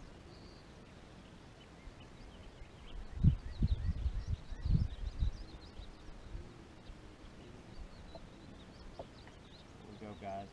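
Faint bird chirps over a quiet outdoor background, with a run of several low thumps starting about three seconds in and lasting around two seconds.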